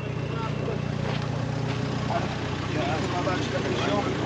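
A stopped four-wheel-drive's engine idling with a low steady hum, which thins a little about halfway through, with faint voices in the background.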